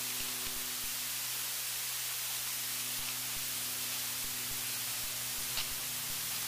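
Steady electronic hiss with a faint low hum under it: the recording's own noise floor. One faint tick near the end.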